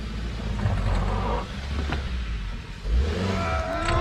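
Hyundai hatchback's engine revving under load as the car claws up a steep, rocky dirt track, the low engine note swelling and dipping. A voice-like sound rises near the end.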